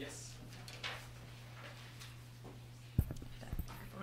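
A podium microphone being bumped while it is handled: one sharp knock about three seconds in and two smaller knocks about half a second later. A steady low electrical hum from the chamber's sound system runs underneath.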